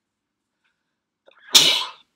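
A person sneezing once, loudly, about a second and a half in.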